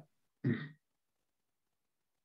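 A person clears their throat once, a short voiced sound about half a second in.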